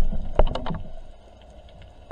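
Underwater sound picked up through a camera's waterproof housing: a few sharp knocks and clicks in the first second, then a faint, steady underwater hiss.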